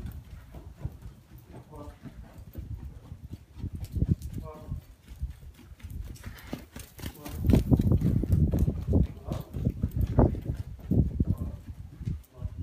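Pony's hooves thudding on deep sand footing as it trots around the handler, an irregular run of dull beats that grows loudest about two thirds of the way through.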